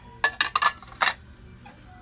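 Wedgwood china plates clinking against each other a few times as a small plate is set down on a larger one, each clink ringing briefly.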